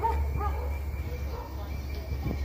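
A dog barking and yipping in a few short, high calls, mostly near the start, over a steady low rumble.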